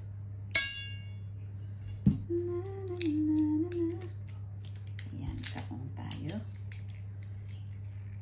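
Kitchen handling sounds: a bright ringing clink about half a second in and a sharp knock about two seconds in, then a person humming a few notes for about two seconds, followed by small clicks and knocks, over a steady low hum.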